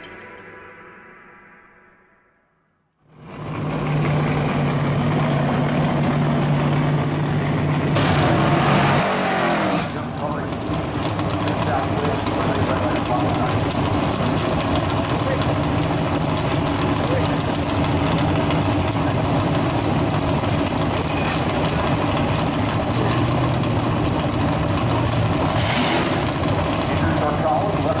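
Music fades out, and after a moment of silence the Hemi V8 of a 1965 Dodge Coronet A/FX drag car is heard running steadily at the drag strip, louder for a couple of seconds around eight seconds in.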